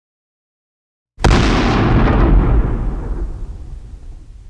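A sudden deep boom about a second in, the explosion-like impact effect of a logo intro, its low rumble dying away over the next few seconds.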